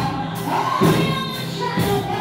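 Gospel singing, a woman's voice through a microphone with other voices joining in, over a beat that falls about once a second.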